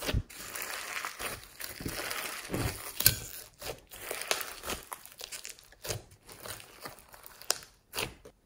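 Glossy slime packed with foam beads and clay squeezed and kneaded by hand: irregular wet squelching and crackling, with one sharp pop about three seconds in.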